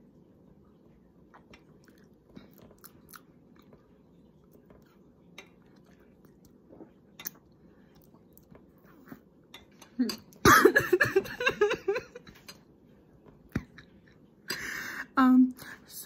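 A person tasting hot chocolate through a straw: soft mouth and handling clicks, then a loud vocal reaction about ten seconds in, and a short hissing slurp just before talking starts.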